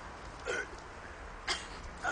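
A young woman hiccupping twice, short and sharp, about half a second in and again about a second and a half in, with gas from the Pepsi and Mentos she has swallowed.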